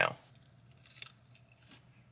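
A person quietly biting into and chewing a crispy hash brown, with faint crunches about a second in and again a little later, in an otherwise quiet car cabin.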